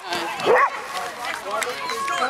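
A dog barking, with one loud bark about half a second in, over people talking.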